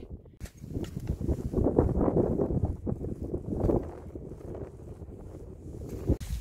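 Wind buffeting the microphone: a rough rumble that swells about a second in and eases off after about four seconds.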